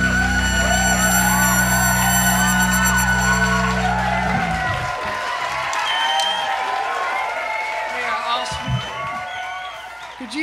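A rock band's closing chord rings out on electric guitars, bass and keyboard, then stops about four seconds in. Whoops and cheering run over the chord's end and on after it.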